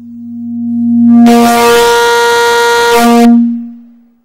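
A loud, steady low electronic tone on the phone-in line swells up over about a second, breaks into a harsh, distorted buzz for about two seconds, then fades away near the end.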